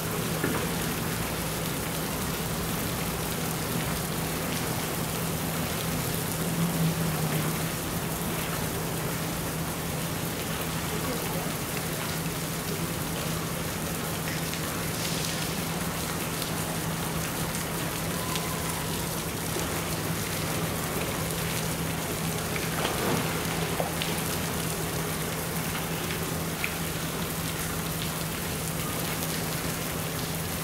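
Water in a polar bear's pool splashing and running with a steady rain-like hiss over a low steady hum, as a polar bear cub swims and paddles about; a couple of slightly louder splashes stand out, about seven and twenty-three seconds in.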